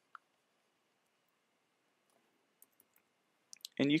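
Near silence with a few faint short clicks, then a man starts speaking near the end.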